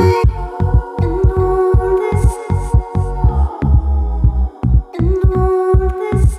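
Loud metal band music: a fast, pounding low beat under sustained higher notes, with no singing.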